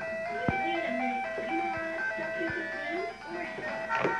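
A simple electronic jingle in clear, tinny notes, a melody over a lower line, with a few light knocks among it.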